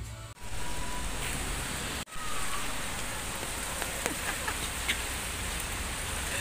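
Steady rain falling, a continuous even hiss, broken twice by brief dropouts.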